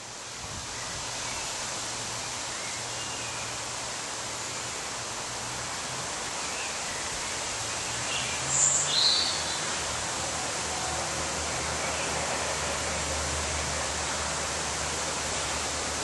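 Steady rushing outdoor background noise, with two short high chirps a little past halfway.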